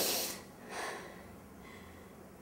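A woman crying: two sniffling, shaky breaths, a strong one at the start and a weaker one just under a second in.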